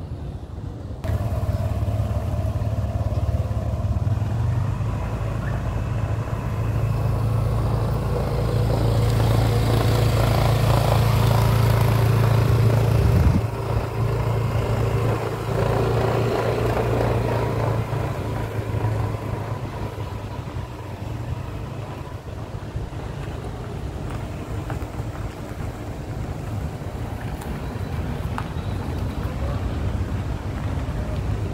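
A motor vehicle engine running steadily with a low hum. It starts about a second in, grows louder, drops off suddenly near the middle, then carries on more quietly.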